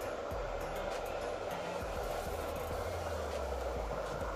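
Steady rushing background noise with a low hum underneath and a few faint clicks, with no distinct event standing out.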